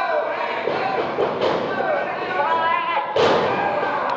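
A wrestler's body slamming onto the wrestling-ring mat, one loud thud about three seconds in, with voices shouting around it.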